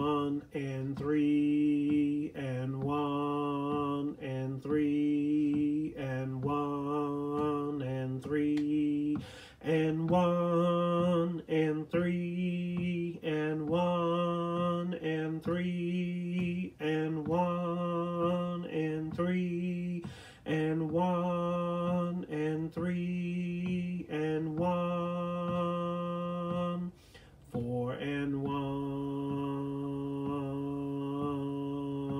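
A man's voice singing the tuba line slowly on a neutral syllable, one sustained note about every second with short breaks between them. The pitch steps up about ten seconds in and drops back near the end.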